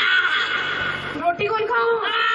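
A person's high-pitched voice making two drawn-out calls without clear words, one at the start and one near the end.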